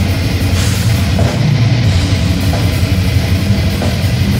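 Death metal band playing live at full volume: heavily distorted electric guitar riffing over drums, with a dense, continuous low end.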